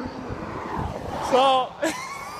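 A car passing on the highway: tyre and engine noise swells over the first second and fades, followed by a short laugh.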